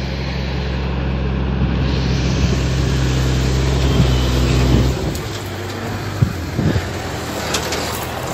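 Diesel engine of a tandem-axle (torton) stake-bed truck driving past close by: a steady low drone that grows louder, then drops away abruptly about five seconds in, leaving tyre and dust noise from the dirt track with a couple of brief knocks.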